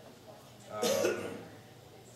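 A man coughs once, short and loud, about a second in.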